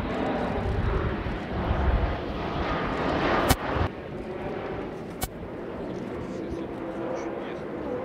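Jet noise from a Sukhoi Superjet 100's twin SaM146 turbofans during a low display pass: a loud, deep rumble that cuts off abruptly about four seconds in and gives way to a quieter, more distant jet sound. There is a sharp click about three and a half seconds in and another about a second and a half later.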